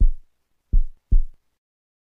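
Heartbeat sound, each beat a low double thud (lub-dub), about one beat a second; it stops about one and a half seconds in.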